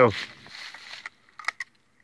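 A few sharp metallic clicks about one and a half seconds in as a shell is loaded into a single-barrel shotgun and the action is closed, in a hurried reload.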